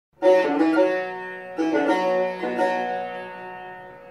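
Solo Persian tar, plucked with a plectrum, improvising in the Dashti mode: three short runs of notes about a second apart, the last left ringing and fading away.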